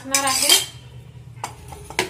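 A metal spoon and a stainless-steel mixer jar clinking together, with a couple of short sharp clinks in the second half.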